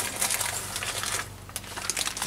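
A hand rummaging in a trouser pocket for a bagged RJ45 network plug: rustling with small clicks, busiest in the first second or so, then a few clicks near the end.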